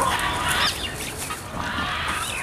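Birds chirping, a few short high chirps about a third of the way in and again near the end, over a steady outdoor hiss.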